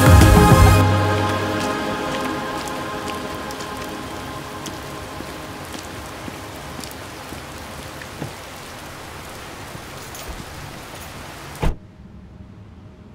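Music fades out within the first two seconds, leaving steady rain with a few scattered drop ticks. One sharp thump stands out near the end.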